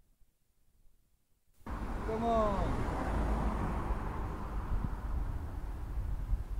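Near silence for about a second and a half while the streamed video stalls to buffer, then its sound cuts back in: a steady, low rumble of wind on an outdoor microphone, with a brief falling vocal sound from a man early in it.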